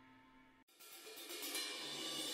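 The held tones of a meditative music track fade away to almost nothing. From about a second in, a soft shimmering cymbal swell rises, leading into the next piece.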